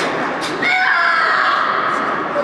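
A female karateka's kiai: one high shout that starts about half a second in and falls steadily in pitch over about a second.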